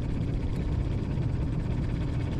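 Steady low rumble with a faint low hum underneath.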